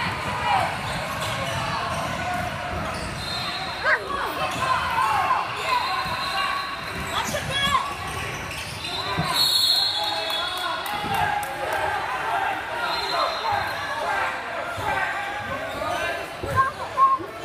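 Live youth basketball play in a gym: sneakers squeaking on the hardwood court, the ball bouncing and players and spectators shouting, all echoing in the hall. A referee's whistle sounds about ten seconds in.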